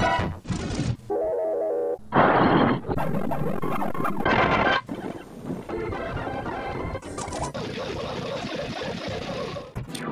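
A run of short company-logo jingles and sound effects from old video intros, played sped up, cutting abruptly from one to the next every second or two.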